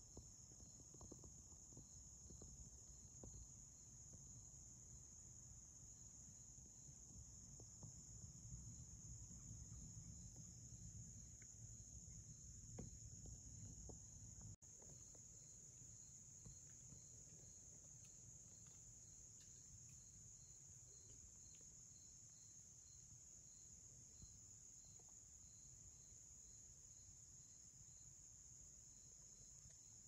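Near silence with faint, steady crickets or other insects chirring, joined after about halfway by a faint even pulsing chirp.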